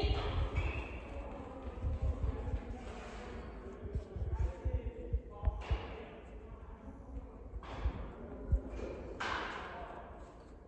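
A dog running on rubber floor matting, its paws making a quick run of dull thumps as it goes out to fetch a dumbbell and comes back, with one sharper thump near the end.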